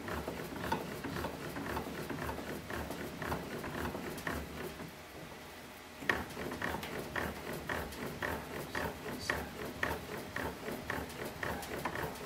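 A 2022 Louisville Slugger Meta fastpitch softball bat being rolled by hand through a steel bat roller under pressure, the rollers working the barrel in a steady rhythm of about two or three short strokes a second, with a brief lull partway through. This is heat rolling with progressive pressure to break in the bat's composite barrel.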